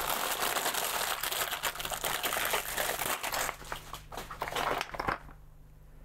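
Clear plastic packaging crinkling and crackling as hands open it and pull the contents out. The crackle is busy for about five seconds, then dies away near the end.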